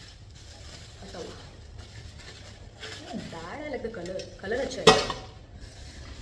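Cardboard boxes and packaging being handled, with one sharp knock about five seconds in.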